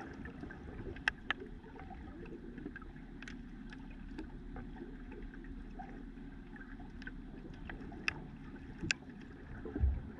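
Underwater ambience picked up by a submerged camera: a steady low rush of moving water with scattered sharp clicks, a few of them louder, and one low thump near the end.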